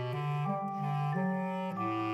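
Instrumental background music: a melody of held woodwind-like notes over a bass line, the notes changing about every half second.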